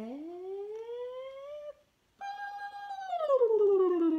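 A woman's voice making long playful "ooh" sounds to a baby: first one slow rising glide, then after a short pause a louder, higher one that holds and then slides down.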